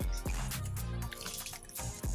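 Soft background music with held notes, over wet chewing and lip-smacking from eating a burger.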